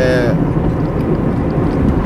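Car driving along, its engine and tyre noise heard inside the cabin as a steady low rumble.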